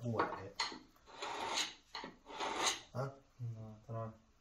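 A hand-held blade scraping against the wall or stone edge in several strokes, each lasting under a second. A short murmur of voice comes near the end.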